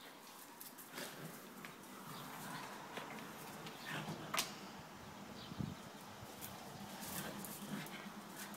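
Two Cavalier King Charles spaniels, one a young puppy, play-fighting on a tiled floor: soft dog vocal noises with scattered clicks and scuffles, the sharpest click about four and a half seconds in.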